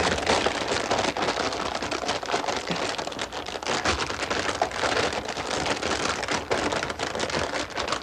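A large bag of potato chips crinkling and crackling continuously as it is squeezed and handled.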